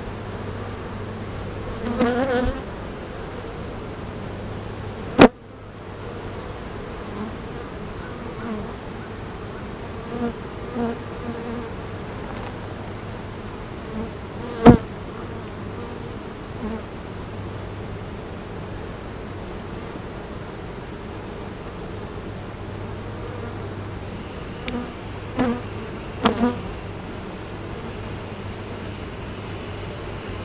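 Honeybees buzzing steadily around an open hive as frames are lifted out. A few sharp knocks cut through the buzz, the loudest about five seconds in and near the middle.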